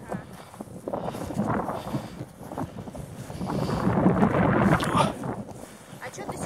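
Rough rustling and crunching of steps through low, dense tundra shrubs, mixed with wind on the microphone, growing loudest about four to five seconds in.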